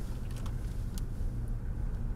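Steady low rumble of a car's cabin, with a faint tick about a second in.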